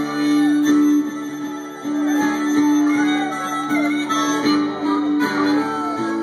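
Live blues-rock band playing an instrumental passage between sung lines. Acoustic guitar and bass hold a sustained chord while a lead line of bending, sliding notes winds over it, with light drum hits.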